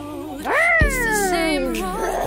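A woman's drawn-out vocal call: it rises sharply about half a second in, then slides down in pitch for over a second, over background pop music.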